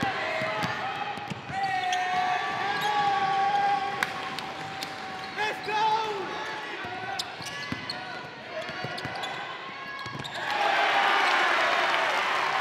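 Live gym sound of a basketball game: a basketball bounced on the hardwood court with sharp knocks, under shouting voices of players and spectators. About ten and a half seconds in, the crowd noise swells and stays loud.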